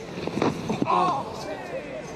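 Field-level sound of a cricket delivery: a sharp knock of the ball about half a second in, then a short raised voice from a player on the field, over steady crowd and ground ambience.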